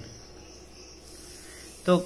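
Faint steady high-pitched background trill under a low hum, with no other events. A man's voice says one word near the end.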